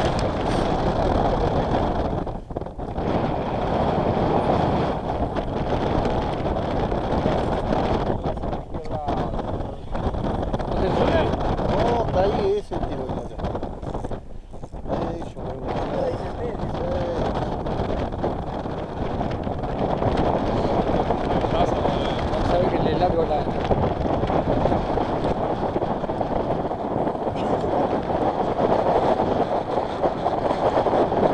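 Steady wind rumble on the microphone, with muffled voices talking now and then.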